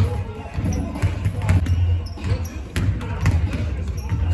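Basketballs bouncing on the floor of a large indoor sports hall, a string of sharp, irregular thuds a few times a second, with players' voices in the background.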